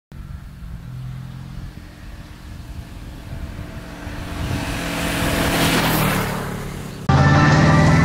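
A motorcycle approaching and passing close by at speed, its sound building to a peak just before six seconds in and then fading away. Music starts abruptly about seven seconds in.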